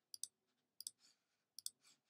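Computer mouse clicking: three quick double clicks, spaced about three-quarters of a second apart, in near silence. The clicks come as the paused music video is skipped back on its progress bar.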